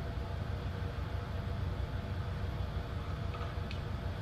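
Steady low background hum of the room, with a couple of faint ticks near the end.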